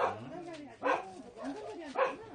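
A dog barking: three short, sharp barks about a second apart.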